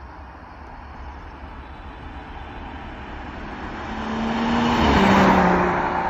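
BMW M240i (turbocharged straight-six) driving past at speed: tyre and engine noise build as it approaches and are loudest about five seconds in. The engine note drops in pitch as the car goes by.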